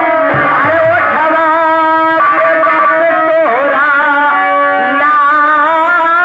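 Live folk-theatre stage music: a wavering melody with vibrato over steady held chords.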